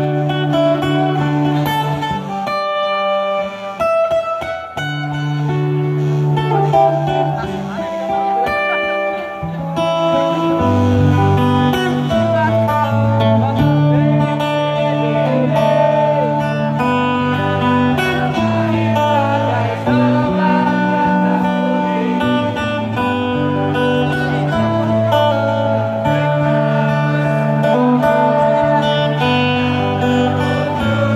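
Live amplified acoustic guitar leading the instrumental intro of a pop-rock song, with long held accompanying notes; lower bass notes fill out the music about ten seconds in.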